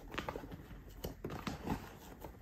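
Several light taps, knocks and rustles as children's books are pushed and shifted into a packed gift basket.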